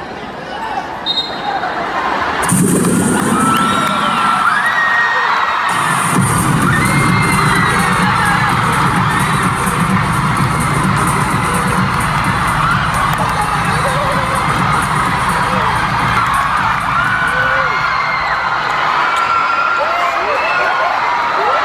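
Arena crowd noise at a basketball game: many voices shouting and cheering together. Music with heavy bass joins about six seconds in and plays under the crowd to the end.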